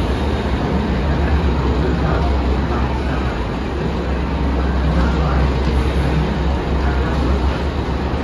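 Mako hyper roller coaster's lift hill in operation as a loaded train is hauled up the chain lift: a steady, loud low rumble.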